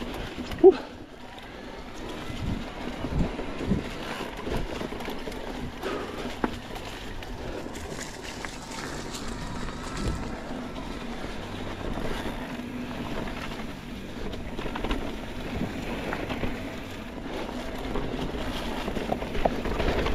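Electric mountain bike ridden fast down a dry, leaf-covered singletrack: tyres rolling through the leaves, with rattles and knocks from the bike over the rough trail and wind on the microphone. A sharp knock stands out less than a second in.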